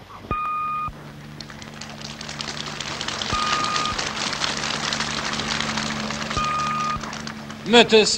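Three identical electronic beeps, each about half a second long and about three seconds apart, over crackling static that builds and then fades, with a low steady hum underneath. A man's voice from an old speech recording begins near the end.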